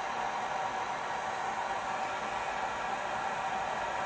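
Electric heat gun running steadily, a constant rush of blown air with a faint steady tone, heating a mass airflow sensor's temperature sensor.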